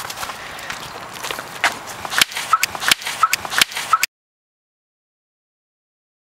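Footsteps with rustling handling noise, a few short steps a second, then the sound cuts off suddenly to dead silence about four seconds in.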